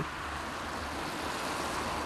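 Steady street background noise: a low rumble and hiss of distant traffic, even throughout.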